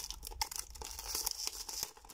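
Cellophane shrink-wrap crinkling and tearing as it is pulled off a small perfume box, a run of small crackles.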